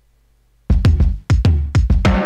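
Near silence for most of the first second, then a programmed drum-machine beat starts, played through Ableton Live's Chromatonic Kit drum rack. It has deep kicks that fall in pitch, with short, sharp hits between them.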